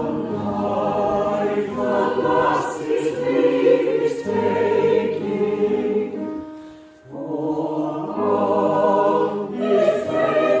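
Mixed chorus singing an operetta ensemble; the singing fades out about six seconds in and starts again a second later.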